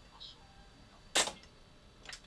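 A single sharp mechanical click about a second in: a piano-key transport button on a Philips N1500 video cassette recorder being pressed down and latching.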